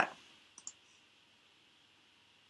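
Two faint computer mouse clicks, close together about half a second in, over quiet room tone.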